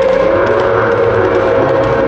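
Music playing loudly, with long held notes.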